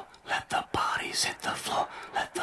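A whispered voice in short, quick phrases.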